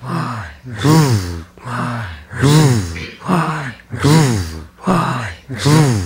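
A man's voice in rhythmic, breathy chanting: a level voiced breath followed by one that rises and falls in pitch, the pair repeating evenly about every second and a half.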